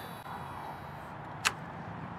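A fishing cast: a faint high hiss of line paying out off the reel fades in the first half-second. A single sharp click follows about one and a half seconds in, over a quiet steady outdoor background.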